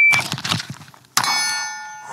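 Shot-timer start beep, then the fanny pack's zipper ripped open by its pull tab. About a second later comes a handgun shot on a steel target, and the plate rings on with a clear metallic tone. The shot comes 1.28 s after the beep.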